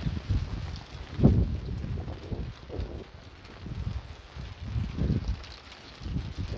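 Hail falling, heard as a patter of many faint ticks, with wind buffeting the microphone. A brief louder burst comes about a second in.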